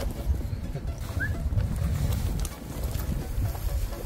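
Wind buffeting the microphone in uneven low gusts, with one short rising chirp about a second in.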